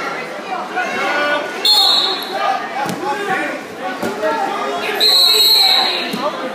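Crowd talking and calling out in a large gym hall, cut through by two shrill whistle blasts, a short one about a second and a half in and a longer one near the end, with a couple of thuds in between.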